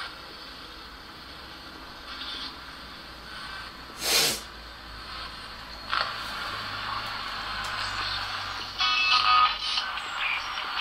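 Radio-like static and hiss from a handheld spirit-box device, with a short sharp burst of noise about four seconds in and a louder crackly stretch near the end.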